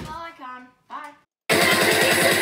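A boy's voice briefly, then a moment of silence, then loud electronic music with a steady pulsing beat cuts in abruptly about one and a half seconds in.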